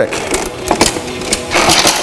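Steel war hammer's back spike being worked in a pierced steel breastplate: a few short metallic knocks, then a grinding scrape near the end.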